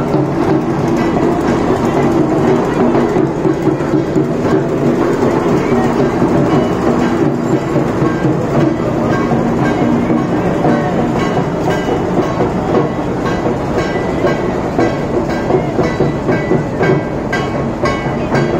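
Loud, continuous din of a street procession: crowd voices mixed with music and a steady low drone. Rhythmic beats become clearer toward the end.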